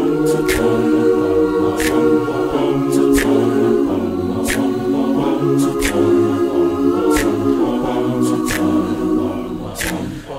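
A cappella choir singing held chords in several-part harmony, the chord changing every second or two, with low voices pulsing beneath.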